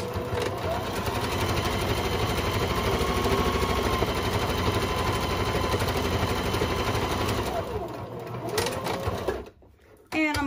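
Janome electric sewing machine stitching a seam through cotton fabric at a fast, even rate, its motor pitch rising as it gets going and falling as it slows; it stops shortly before the end.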